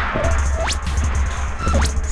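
Live experimental electronic music from turntables, electronics and modular synthesizer: a heavy, steady low bass under grainy noise, with two fast upward pitch sweeps, one under a second in and one near the end.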